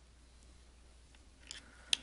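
A few small, sharp clicks near the end as needle-nose pliers push a jumper wire into a plastic solderless breadboard, over a faint steady low hum.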